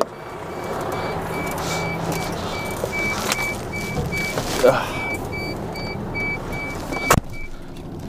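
Inside a lorry cab with the diesel engine idling, a warning beeper pulses about three times a second and stops shortly after a sharp click near the end. About halfway through there is a short squeak from the driver's seat, which is still squeaking despite a spray of WD-40.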